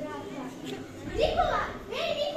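Children's voices talking, with one louder child's voice rising sharply in pitch about a second in.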